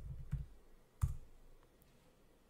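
A single sharp click about a second in, from the laptop's keyboard or mouse as the Camera app is launched, with a few soft low thumps just before it. The sounds are faint.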